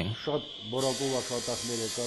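A man speaking quietly. A steady high hiss comes in abruptly just under a second in and continues under the voice.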